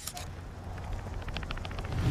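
Trailer sound design: a low rumble swelling, with a quick run of mechanical clicks, about ten a second, in the second half, leading into loud music.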